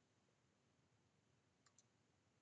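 Near silence, with a faint mouse click about three-quarters of the way through.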